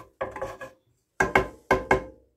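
A wooden spatula scraping melted butter around a nonstick frying pan, then knocking twice against the pan near the end, each knock leaving a short metallic ring.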